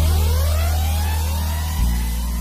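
Intro of an electronic afrobeat remix track: a deep, sustained sub-bass note with a synth sweep rising in pitch over it, the bass shifting to a new note near the end.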